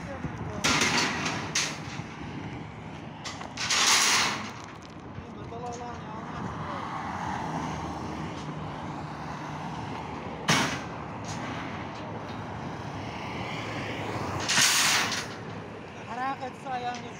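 Steel reinforcing bars clattering as they are pulled off a car's roof rack and dropped onto a pile: three longer rattling bursts and one sharp metallic clank, over a steady hum of road traffic.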